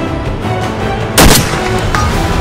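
A single shot from a Barrett M82A1 .50 BMG rifle about a second in, a sharp blast with a short tail, over background music.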